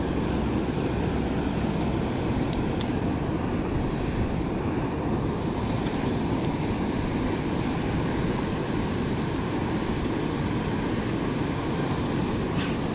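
Water rushing out of a dam spillway: a steady, even rush of whitewater that does not let up.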